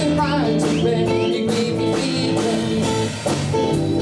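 A small live band playing: electric bass, guitars and drum kit, with a steady groove and a brief drop in level about three seconds in.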